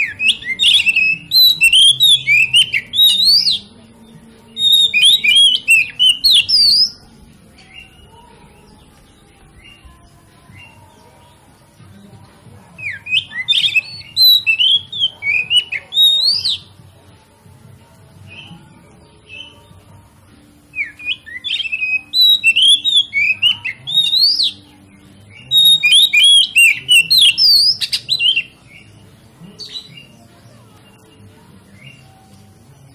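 Oriental magpie-robin (kacer) singing in five loud bouts of rapid, varied whistles and chatter, with quieter pauses between them and the longest pause near the middle.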